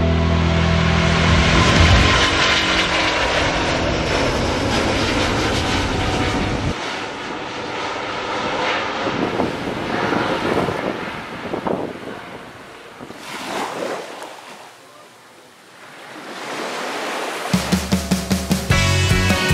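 Twin-engine jet airliner taking off, its engine noise loudest about two seconds in and fading over the next few seconds. Rock music plays at the start and comes back just before the end.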